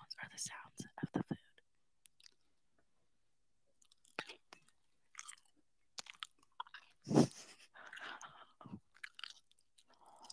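Close-miked eating of crispy fried catfish: crunchy bites and wet chewing with sharp mouth clicks, a quiet pause in the first few seconds, and one loud crunching bite about seven seconds in followed by chewing.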